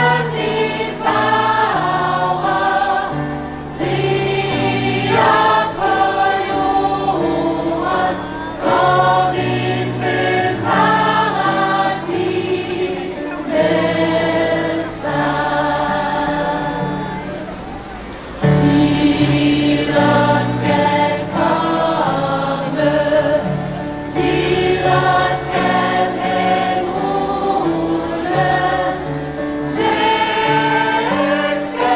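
Gospel choir singing a hymn live, many voices together in harmony. The singing eases into a quieter passage past the middle, then comes back in loud at once.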